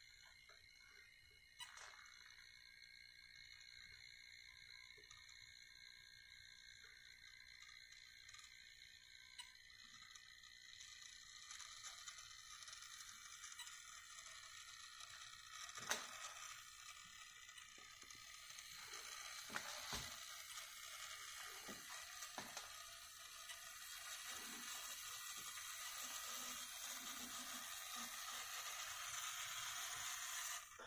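Model train locomotive running on the track during a speed-measurement run: a faint, high-pitched motor and wheel whine that grows louder from about ten seconds in, with a few sharp clicks.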